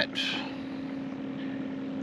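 A steady, unchanging low hum, with a short hiss just after the start.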